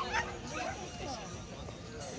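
A dog giving short yipping barks, over background chatter of people.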